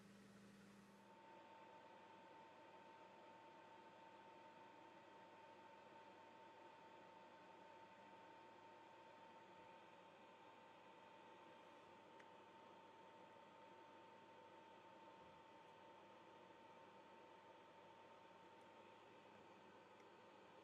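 Near silence: faint room hiss with a faint, steady high-pitched whine that starts about a second in.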